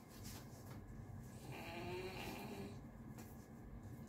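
Faint snoring of a dog lying on the floor, one drawn-out snore from about a second and a half to nearly three seconds in, under light rustling of a cotton top being pulled down and adjusted.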